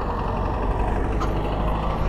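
Steady wind and road noise from riding a bicycle along a paved road, picked up by a chest-mounted GoPro's microphone, with a low rumble of wind on the mic.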